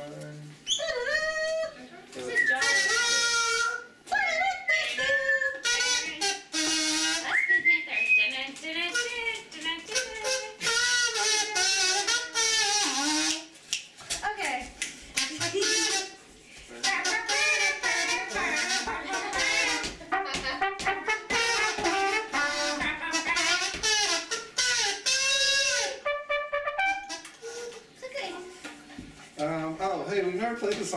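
Small live band playing a song, with a voice singing and a trumpet playing over the band; the music eases off near the end.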